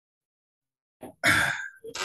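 A man's breathy sigh, about half a second long, coming after a second of silence.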